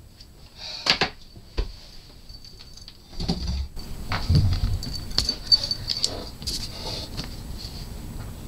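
A couple of sharp knocks, then rustling and handling of a sheet of paper on a desk, with a marker scratching on the paper near the end.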